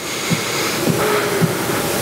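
A steady hiss-like noise that comes in suddenly and holds, with two soft low thumps in the middle.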